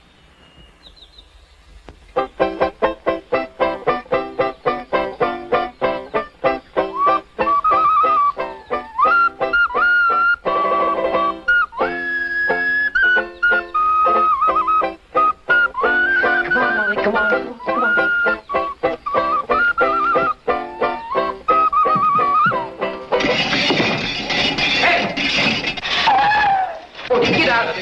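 Banjo picking a lively tune with a high whistled melody over it from a few seconds in. A loud burst of noise breaks in near the end.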